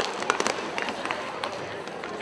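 Inline hockey play: sharp, irregular clacks of sticks and the plastic puck on the sport-court floor, several each second, over a steady murmur of voices in the arena.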